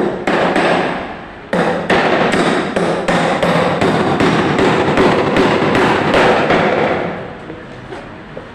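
Hammer blows on the timber clamp of a wooden column formwork box, a steady run of about two to three strikes a second, with a short pause after the first few. The blows trail off near the end.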